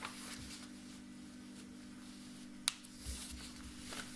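Sheet of paper being folded in half and creased by hand on a wooden table: soft rustling, with one sharp click a little under three seconds in.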